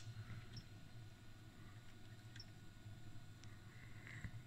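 Near silence with a low steady hum, broken by three faint clicks from the oscilloscope's front-panel timebase switch being pressed.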